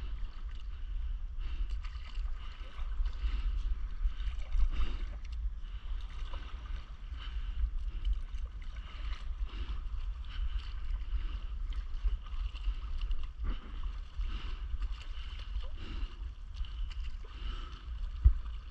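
Water lapping and splashing around a stand-up paddleboard on the sea, over a steady low wind rumble on the microphone.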